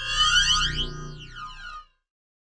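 Short synthesized logo sting: electronic tones sweeping up and down in pitch over a low steady hum, loudest at the start and fading out just before two seconds.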